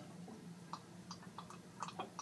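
Faint, irregular small pops and ticks, about eight of them, from acetylene and chlorine gas bubbles reacting with each other in a cylinder of water, the 'underwater fireworks' reaction happening near the water surface.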